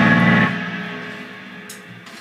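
Final chord of a rock song on electric guitar and bass, held loud for about half a second after the drums and cymbals stop, then ringing out and dying away.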